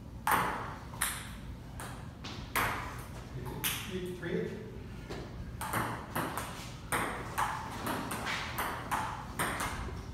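Table tennis rally: a ping-pong ball clicking sharply off paddles and the table, a few hits, a pause of about two seconds near the middle, then a quicker run of about two hits a second.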